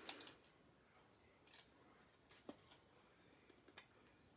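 Near silence, with three faint ticks of small handling noise, one each at the start, the middle and near the end, as a craft pick tool works at the backing of a foam adhesive strip.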